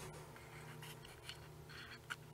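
Faint handling noise: a few small scratchy clicks and rustles close to the microphone, over a low steady hum.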